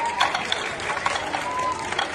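A Wing Chun wooden dummy being struck, a quick run of sharp wooden knocks as forearms and hands hit its wooden arms, over the murmur of hall chatter.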